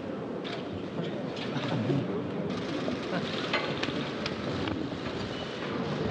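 Indistinct murmur of several voices in a large hall, with a few scattered sharp clicks.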